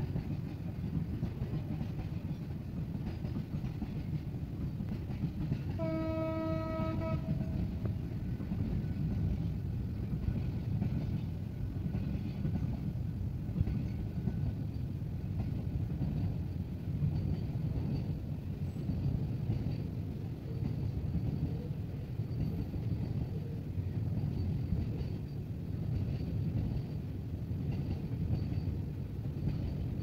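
Freight train wagons loaded with shipping containers rolling past, a steady low rumble. About six seconds in, a train horn sounds once for about a second.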